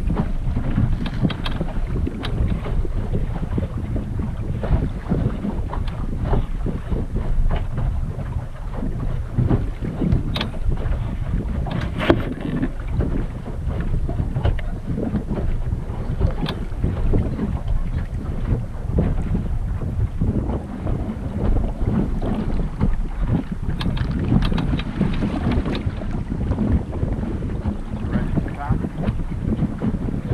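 Wind buffeting the microphone, with water rushing and slapping against the hull of a small sailboat under way. It is a continuous, rumbling noise broken by frequent irregular splashes.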